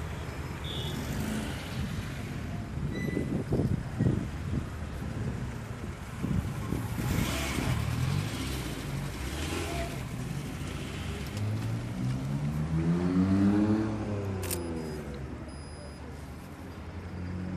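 Road traffic passing on a busy road, with swells of tyre noise. Near the end a car engine revs up, its pitch rising for about two seconds, then drops away.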